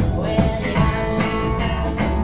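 Live garage rock-and-roll band playing: electric guitars over upright double bass and drum kit, heard from the audience.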